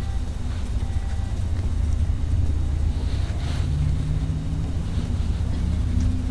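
A steady low rumble fills the background, with faint soft swishes of a fluffy powder brush sweeping across the skin.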